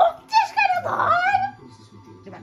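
A dog making whining yelps: three calls that rise and fall in pitch, the last the longest, ending about a second and a half in.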